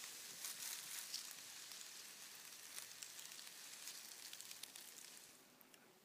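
Northern Pacific rattlesnake rattling: a faint, steady high sizzling buzz that dies away about five seconds in.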